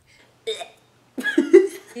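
A girl laughing in short bursts: a brief one about half a second in, then a louder run of laughs about a second later.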